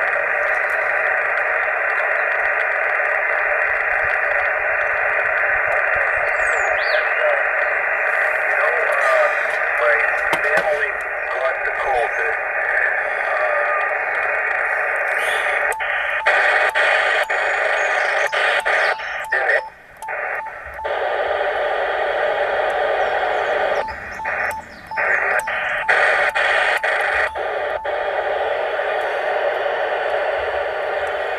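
Yaesu FT-857 transceiver's speaker playing a single-sideband voice signal on the 20-metre band, thin and narrow-sounding over steady hiss. From about halfway through, the radio is being retuned, with clicks and brief drop-outs in the signal.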